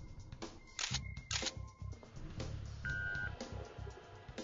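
Camera shutter clicking several times, the two sharpest clicks about a second in, over background music.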